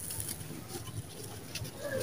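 Dry, gritty sand-cement powder crumbling and sifting through bare fingers, with faint scattered crackles of falling grains. A bird cooing in the background.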